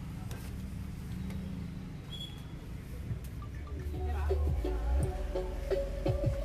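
Music played through PA loudspeakers driven by a power amplifier: a low bass rumble at first, then about four seconds in the music gets louder with a heavy deep bass line, melody notes and drum hits.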